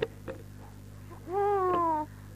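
Newborn baby crying: one short wail falling in pitch, starting about a second and a half in, after a click at the very start, over a steady low hum.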